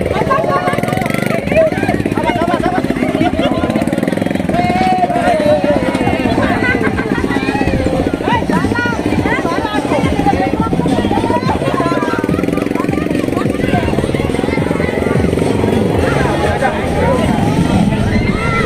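Crowd of many voices chattering and calling out at once, over the steady running of a motorcycle engine.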